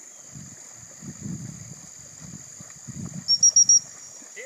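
Four quick, high pips on a gundog training whistle near the end, the loudest sound here; a rapid series of pips like this is the usual recall signal to a retriever in the water. Under it, a steady high drone of insects.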